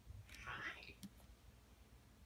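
A faint whisper or breathy voice for about half a second, then a single soft click; otherwise near silence.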